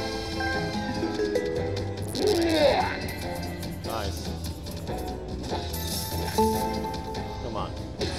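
Video slot machine playing its free-spins bonus music and electronic jingles, with chiming notes and a swooping sound effect about two and a half seconds in as the reels land and a win is awarded.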